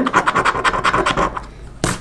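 Scratch-off lottery ticket coating being scraped away in quick back-and-forth strokes, about ten a second, dying down about halfway through. A single sharp click comes near the end.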